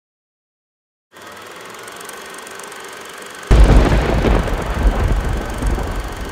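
Intro sound effect for a logo: a quieter noisy sound starts about a second in. At about three and a half seconds it jumps suddenly to a loud, deep rumbling boom that stays loud, rising and falling a little.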